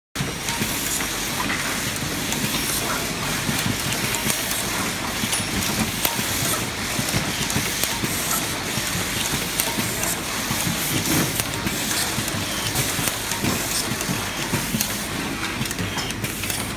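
Factory floor noise on a power-tool assembly line: a steady hiss of machinery with many small clicks and clatters.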